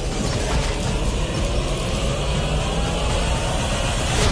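Action-film trailer soundtrack: a dense mechanical rattling with heavy bass, under a tone that slowly rises in pitch.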